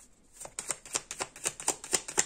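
A deck of playing cards being shuffled by hand: after a short pause, a rapid run of soft card clicks, about six a second.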